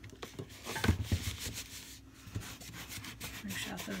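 Hands rubbing and pressing on a small stretched canvas to work out air bubbles under a glued-on paper picture. The rubbing comes in strokes, heaviest about a second in.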